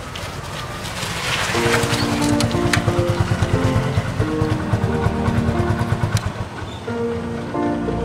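Background score of sustained held notes over a low pulsing bed, the held notes coming in about a second and a half in.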